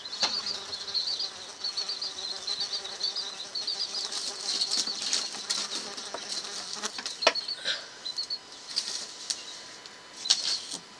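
Small birds chirping rapidly and high, almost without pause, with a few sharp knocks: one just after the start and two around seven seconds in.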